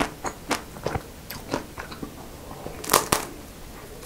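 Close-miked chewing of a chocolate-coated Magnum Mini ice cream bar, with small irregular crackles. About three seconds in comes a louder, sharp crack as the chocolate shell is bitten.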